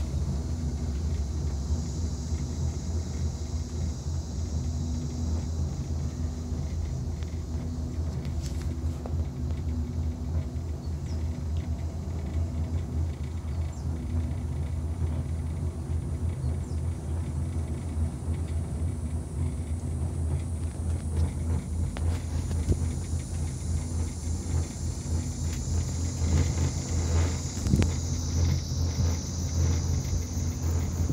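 Steady low rumble inside a cable-car gondola cabin as it travels along the cable, with a few light clicks and rattles near the end.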